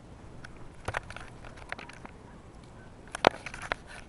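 Handling noise of a camera held close: scattered clicks and knocks as it is gripped and moved, the loudest about three seconds in.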